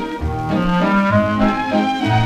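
Swing-era dance orchestra playing an instrumental passage, brass to the front over a bass line that steps from note to note, played back from a 78 rpm shellac record.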